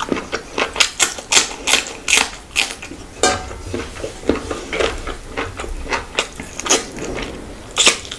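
Close-miked chewing and lip-smacking of a mouthful of rice and curry eaten by hand: a string of sharp, wet clicks, about two a second and uneven, with a louder one near the end as another handful goes into the mouth.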